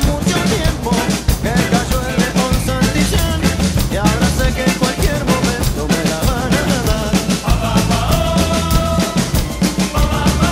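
A Gretsch drum kit played steadily with kick, snare and cymbals, in time with a recorded rock backing track that has a melody running over it.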